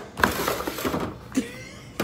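A Pringles can being picked up and handled: a knock about a fifth of a second in, about a second of scraping and rustling, then a smaller click.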